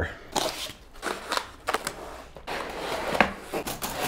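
Cardboard box and foam packing being handled during unboxing: a run of rustling and scraping with sharp little crackles and taps.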